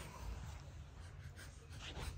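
Faint scratchy rustling of a toddler's hands and knees moving over carpet as she crawls, with a few short soft scuffs.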